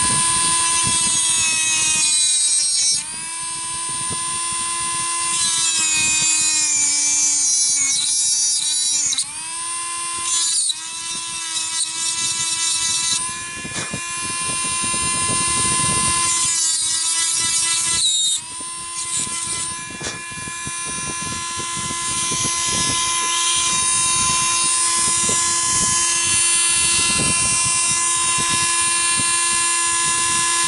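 Power Max handheld mini rotary tool with a small bit running at high speed, a steady high whine. It drops in pitch several times in the first two-thirds as the bit bites into the wooden hull to enlarge a hole, then runs evenly.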